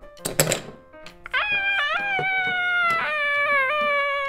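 A short knock or two, then a high-pitched "Ah!" cry from a person's voice in play, held for about three seconds with its pitch wavering.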